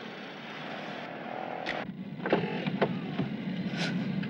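Steady low engine and road rumble of a 1959 Cadillac, heard from inside its cabin and growing slightly louder. A man briefly says "oui, oui" about two seconds in.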